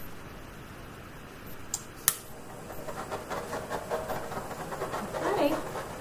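Handheld butane torch held over wet acrylic paint to pop its surface bubbles: a faint steady hiss, with two sharp clicks about two seconds in. Soft wordless vocal sounds come in over it in the second half.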